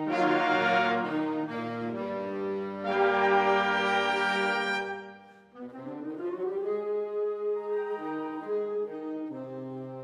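Wind ensemble playing sustained brass chords. A loud chord sounds at the start and a second loud swell comes about three seconds in, breaking off near five seconds. Softer held chords follow, shifting a couple of times.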